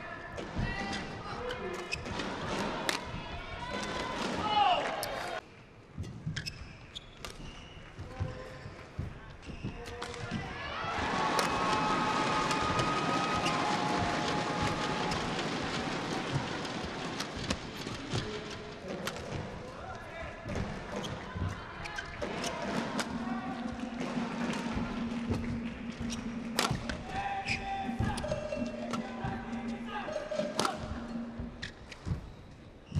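Badminton rally: sharp racket strikes on the shuttlecock and players' footfalls on the court, heard as a string of quick impacts. About eleven seconds in, crowd voices swell for several seconds, and a steady low tone runs through the last several seconds.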